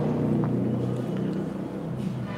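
A low, steady engine drone that fades over the second half.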